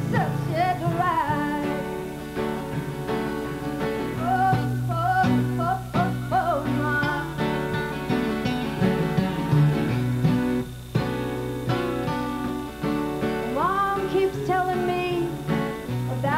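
Two acoustic guitars strumming a country-folk tune, with a woman's voice singing over them at times.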